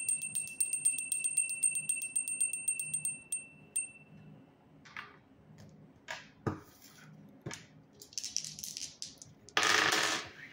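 Small hand bell rung rapidly, its clapper striking many times a second over a steady high ring, stopping a little over three seconds in. A few light knocks follow, then near the end a loud rattling burst of dice being rolled on a table.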